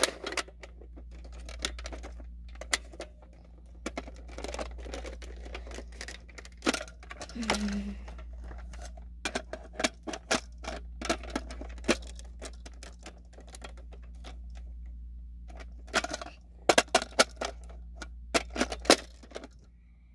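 Toy foam-dart crossbow blaster being handled: repeated sharp plastic clicks and rattles as it is primed, fired and reloaded with its magazine, with a quick run of clicks near the end.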